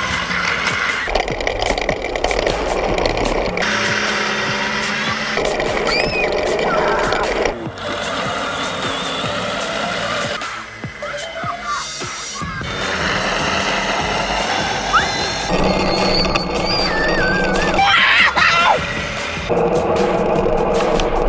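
Background music, with a few short high glides in pitch heard over it.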